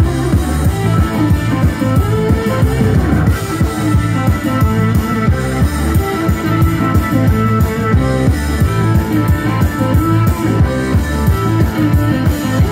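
Live blues-rock band playing an instrumental passage: electric guitars, organ and drums with a steady beat, loud throughout.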